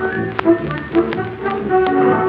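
Instrumental passage of a 1930s operetta song recording: an orchestra playing held melody notes, punctuated by several sharp percussive taps. The sound is narrow, with no high treble, as in an early recording.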